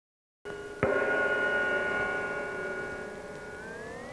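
Eerie sound design opening a horror trailer: a sustained ringing chord of several tones comes in about half a second in, with a sharp hit just under a second in. The chord slowly fades, then slides upward in pitch near the end.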